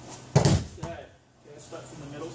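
A child landing on a foam judo mat from a hip throw (o-goshi), a single loud thud about a third of a second in, followed by a smaller thump.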